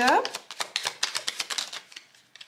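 Tarot cards shuffled by hand: a quick run of light papery clicks, about ten a second, fading out toward the end.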